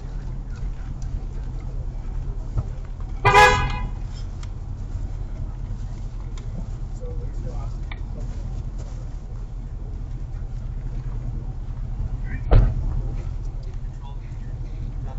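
A car horn sounds one short honk a little over three seconds in, over a steady low hum. Near the end, a single sharp thump.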